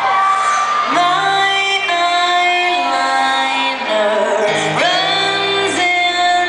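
Live pop song heard from the audience in a theatre: a woman singing long, sliding notes over piano accompaniment.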